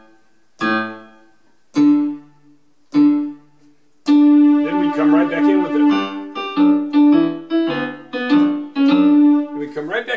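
Casio electronic keyboard on a piano pad sound: three single notes struck slowly, about a second apart, each left to die away, then from about four seconds in both hands play a melody over a held bass line.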